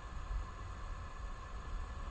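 Faint steady low rumble and hiss with a light constant hum, no distinct events.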